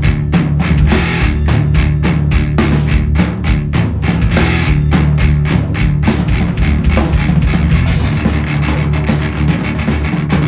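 Rock song playing an instrumental passage with no vocals: electric guitar, bass guitar and a drum kit, with drum and cymbal hits sounding in a steady rhythm over a continuous bass line.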